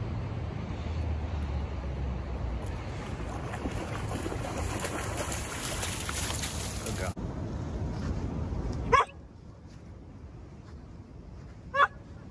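Wind and river noise, with a hiss of flying spray as a wet Rough Collie shakes water from its coat. Then a dog barks twice, short sharp barks about three seconds apart, the first the loudest sound of all.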